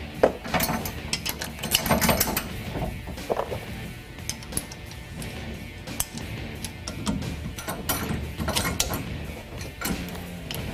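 Hand ratchet clicking and metal parts tapping as the bolt joining the sway bar to the end link is run in: a quick run of clicks in the first couple of seconds, then scattered clicks.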